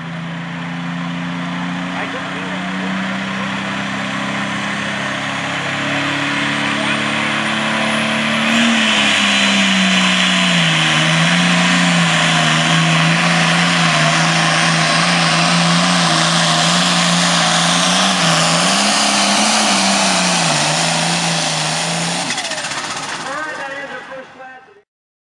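Turbocharged diesel engine of an International Light Pro Stock pulling tractor running at full throttle under the load of the weight-transfer sled. It builds over the first eight seconds with a rising high whistle, then holds loud, its pitch sagging and recovering as the load grows, and fades near the end.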